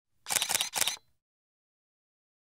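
Single-lens reflex camera shutter sound: a quick burst of several sharp shutter clicks lasting about a second, in the first half.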